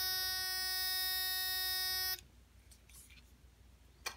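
Handheld medical scanner prop giving a steady electronic buzz while switched on, cutting off suddenly about two seconds in.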